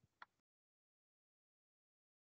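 Near silence: the audio drops to dead silence after one faint click just after the start.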